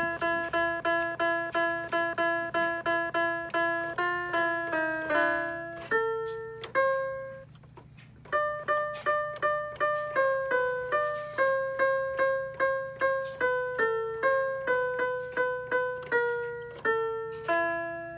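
A Kawasaki toy electronic keyboard played one note at a time in a simple tune. It opens with the same note struck over and over, about three times a second, then moves between a few pitches, with a short break about halfway through. Each note is short and fades quickly, like a plucked string.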